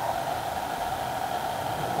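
Steady, even whirring hiss of a running fan or similar machine, with no distinct events.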